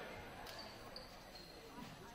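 Faint murmur of voices in a gymnasium, with a few knocks of a basketball bouncing on the hardwood floor.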